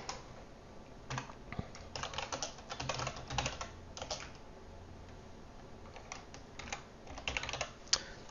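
Typing on a computer keyboard: quick runs of key clicks in bursts, with a pause of about two seconds in the middle.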